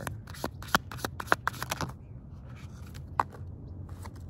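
A tarot deck shuffled by hand: a quick run of sharp card flicks and snaps through the first two seconds, then a single snap a little past three seconds in.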